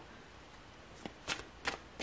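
Tarot cards being handled: three short, crisp snaps in the second half, over a faint hiss.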